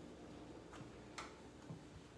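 Faint footsteps on a hardwood floor: a few soft taps about half a second apart over quiet room tone.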